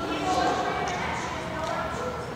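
Indistinct voices in an echoing school gymnasium, with a few light thumps.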